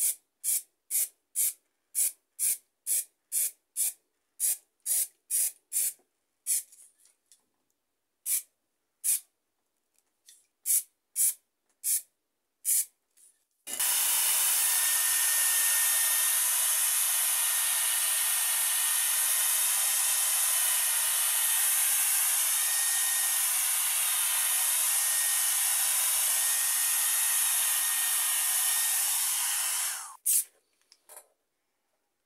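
Aerosol spray paint can sprayed in quick short bursts, about two a second at first and then more sparsely. About 14 seconds in, a hair dryer switches on and blows steadily over the fresh paint, a continuous hiss with a faint high whine.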